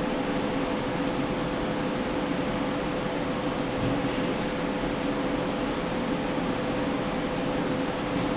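A steady, even hiss with a constant low hum from equipment running, like a cooling fan.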